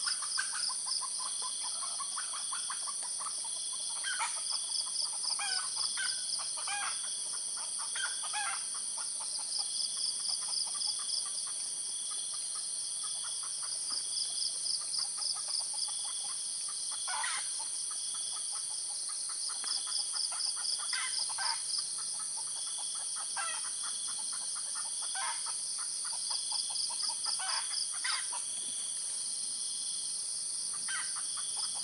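Steady insect chorus with a buzzing trill that swells every four to six seconds. Short calls from a wild red junglefowl cock and other birds break in now and then, in a bunch in the first few seconds and then scattered through.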